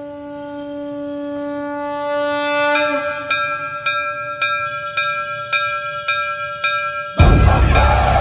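A conch shell (shankh) blown in one long, steady note. About three seconds in, its tone changes and a bell starts ringing about three times a second alongside it. Near the end, loud devotional music with singing cuts in.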